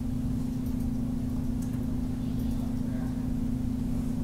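A steady low electrical hum, one fixed tone over a low background rumble, with a few faint ticks.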